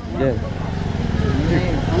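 A small engine running steadily nearby, a low, evenly pulsing rumble with faint voices over it.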